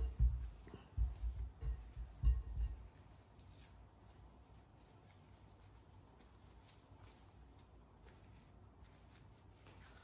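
Wet hands working a sticky sourdough dough in a ceramic bowl: a run of soft, irregular thuds and handling noises for about three seconds, then only faint rustling.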